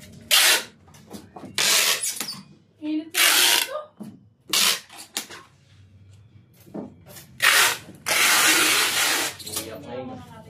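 Packing tape pulled off a handheld tape dispenser in about six ripping strips as a cardboard box is taped shut. The longest pull comes near the end and lasts over a second.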